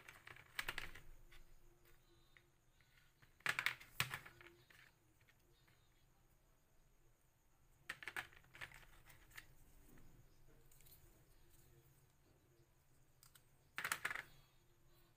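Small scrap parts and a bundle of thin wooden sticks being handled and set down on a plastic tray: four short bursts of light clicking and clattering, with quiet room tone between them.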